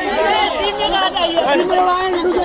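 Several people talking over one another at once, a loud tangle of overlapping voices.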